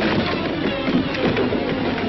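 Cartoon soundtrack of music mixed with a rapid, busy clatter of sound effects.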